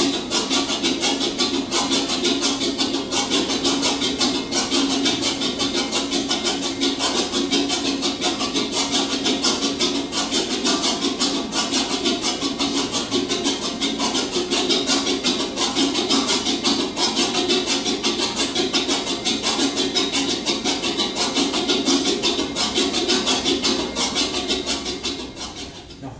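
Homemade 8-bit relay computer running a program, its electromechanical relays clicking in a steady rhythm of about four clicks a second, a clock of about four hertz. Heard played back through a TV's speakers in a small room.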